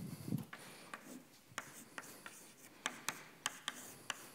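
Chalk writing on a blackboard: a run of short, sharp taps and scratches as the strokes of an equation are drawn.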